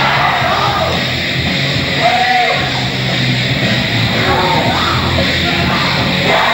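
Loud, heavy rock music with shouted vocals over a steady bass line.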